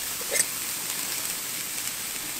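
Marinated freshwater drum fillets sizzling on the hot grates of a gas grill, a steady hiss, with one brief click about half a second in.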